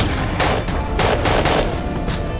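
A volley of gunshots, several in quick succession about half a second apart, over a music score.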